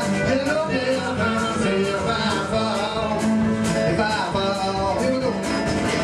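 A live country-folk band playing a song with a steady beat: resonator guitar, banjo, upright bass and drum kit.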